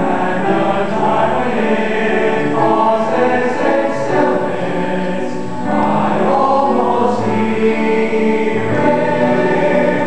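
Mixed choir of male and female voices singing in harmony, with sustained notes that move from chord to chord.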